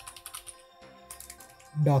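Computer keyboard being typed on: a run of separate, light key clicks at an uneven pace, over faint background music.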